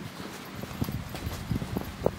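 Footsteps on a wet gravel path, a series of short, uneven steps.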